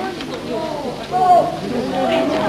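A crowd of people chattering and calling out at once, with one voice calling out louder about a second in.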